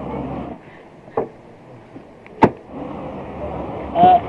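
Handling noises as items are taken from a shop shelf: a soft knock about a second in and a sharp click about halfway through, over a low background rumble.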